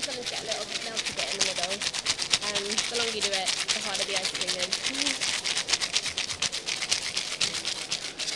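Ice rattling inside two hand-shaken plastic Freezeez toy ice cream makers: a fast, steady rattle of shakes, with voices chattering behind.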